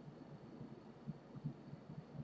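Faint low hum with a couple of soft, low thumps a little past a second in.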